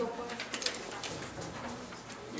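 Sheets of paper being handled and passed hand to hand, with a few short rustles and crinkles about half a second in, over faint murmured voices.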